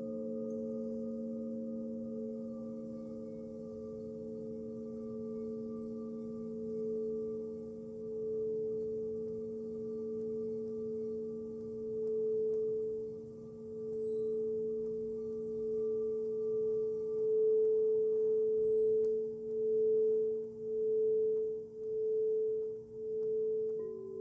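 Several singing bowls ringing together in long, sustained, pure tones. One tone swells in the second half, and the sound pulses in a slow wavering beat of about once a second near the end.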